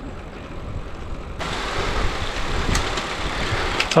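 Wind on a bike-mounted camera's microphone and road-bike tyres rolling on tarmac while riding, a steady rushing noise that turns brighter and hissier abruptly about a second and a half in.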